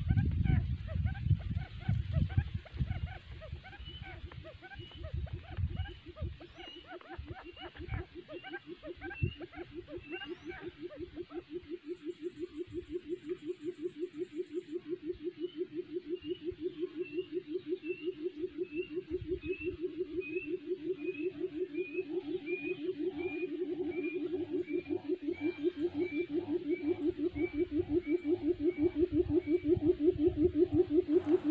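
Decoy quail calling with a low, rapid purring pulse of about five beats a second that grows steadily louder, over a row of short higher chirps about two a second. A few low thumps in the first few seconds.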